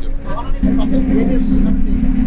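A bus's steady low drone that sets in about half a second in and holds, under passengers' voices.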